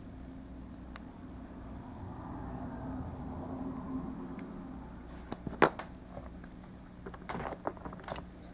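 Small plastic toy parts clicking and rubbing as a Transformers action figure is handled and its gun clip is worked off a ball joint: scattered sharp clicks, the loudest about two thirds through and a small cluster near the end, over a faint steady hum.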